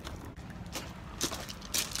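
Footsteps of a person walking, about two steps a second, over steady low wind noise on the microphone.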